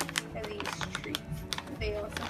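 Crinkling and clicking of a plastic treat bag being handled, over steady background music.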